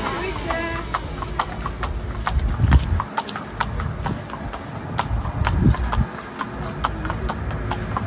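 A pony's hooves clip-clopping on asphalt at a walk as it pulls a light cart, a quick, even run of hoofbeats.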